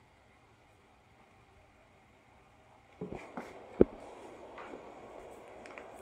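Near silence for the first few seconds. Then a hand handles raw shrimp in a stainless steel bowl: a few soft clicks and one sharp tap against the bowl, over a faint rustle.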